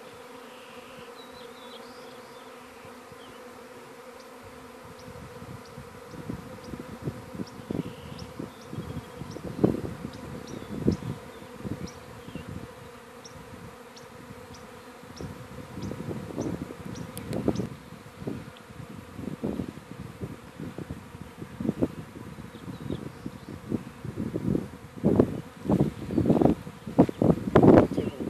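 Honeybee swarm buzzing: a steady hum of many wings, with louder swells rising and falling from about five seconds in and crowding together near the end.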